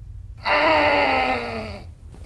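A person's long, drawn-out groan starting about half a second in, wavering briefly and then falling steadily in pitch for about a second and a half.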